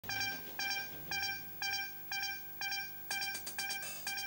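Electronic countdown beeps: short high-pitched tones repeating about twice a second, coming faster over the last second.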